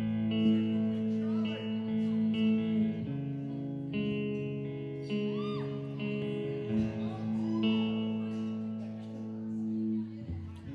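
Instrumental intro of a live rock band: electric guitar playing held, ringing chords with the band, the chord changing every one to three seconds, before any singing.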